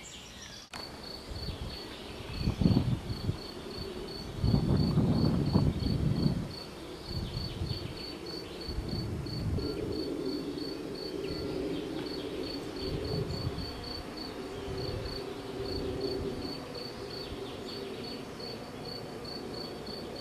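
A cricket chirping steadily outdoors, short high chirps at one pitch about three times a second. Low rumbling noise comes and goes underneath, loudest about two and five seconds in.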